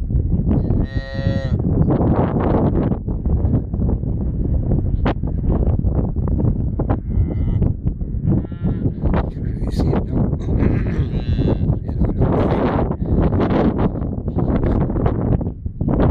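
A newborn calf mooing in several short, high-pitched calls. The first call, about a second in, is the loudest; fainter ones follow around the middle. Steady wind rumbles on the microphone throughout.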